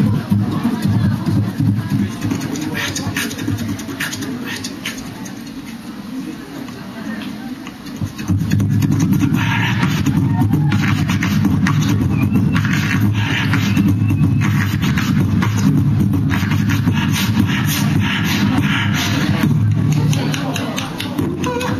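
Human beatboxing into a handheld microphone: a sustained low bass tone under quick clicks and snare-like hits. It eases off in the middle, then comes back louder and busier about eight seconds in.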